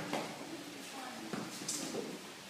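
Faint voices of children talking in a bare hall, with a few soft knocks and scuffs.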